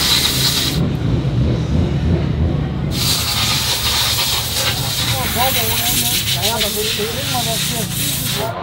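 Compressed air hissing in two bursts from an air hose used on a motocross bike, a short one at the start and a long one from about three seconds in, with voices in the background.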